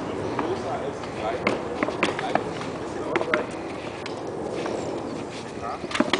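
Several sharp knocks of practice weapons striking shields during a sparring bout, over people talking in the background.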